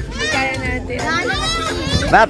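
Children shouting and calling out, high-pitched, in two long rising-and-falling calls.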